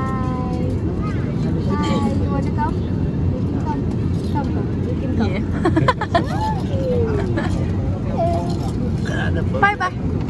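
Steady low rumble of an airliner cabin, with short bursts of voices over it several times.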